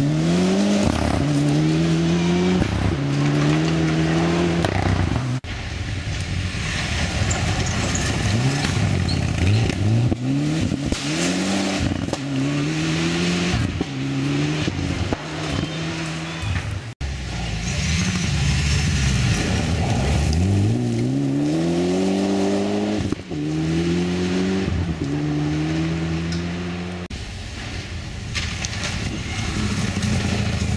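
Rally cars accelerating hard out of a gravel corner one after another, each engine's pitch climbing and dropping back with quick upshifts over the hiss and spray of gravel thrown by the tyres. The sound breaks off abruptly three times, about 5, 17 and 23 seconds in, as one car's run gives way to the next.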